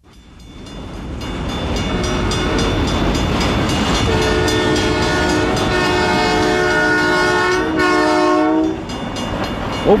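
A train going by: a rumble and rail clatter that fade up from silence over the first couple of seconds, with a train horn sounding a chord of several notes from about four seconds in until nearly nine seconds.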